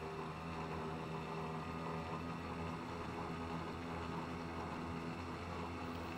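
Small outboard motor running steadily at cruising speed, a constant even-pitched hum, over a steady hiss of water and wind.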